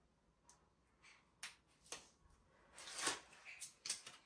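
Soft rustling and crinkling of paper backing being handled and peeled off a double-sided rug gripper sticker, in several short scratchy strokes, the loudest about three seconds in.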